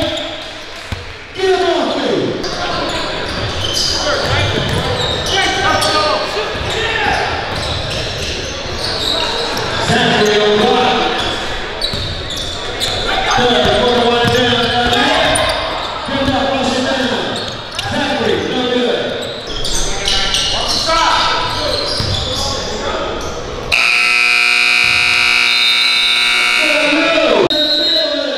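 Indoor basketball game: a ball bouncing on the hardwood among voices in an echoing gym. About 24 seconds in, a loud, steady game buzzer sounds for nearly four seconds, then dies away.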